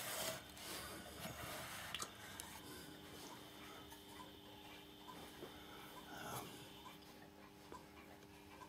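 Near-quiet room with faint handling rustle and a few soft clicks. About three seconds in, a faint steady electrical hum sets in as the variac is turned up to light the bulb.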